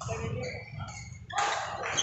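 Indoor badminton hall during a rally: voices and short shouts from around the courts. A sharp racket strike on the shuttle comes near the end.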